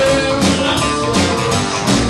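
A live rockabilly band playing, with guitars to the fore over drums and bass and a steady beat.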